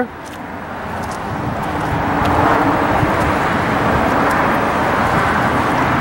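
Road traffic noise that swells over the first two seconds or so and then holds steady, with a faint low hum from an engine under it.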